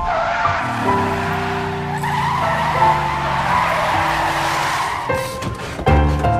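Music with long held notes over the noise of a car's tires skidding on the road, which fades about five seconds in. A burst of sharp clicks follows near the end.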